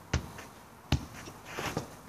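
A football being kept up with the feet: two sharp thuds of the ball striking a foot, about three quarters of a second apart, with a few fainter sounds after.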